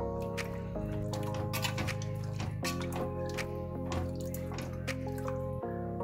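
Background music: sustained chords that change every second or two, over sharp clicking beats.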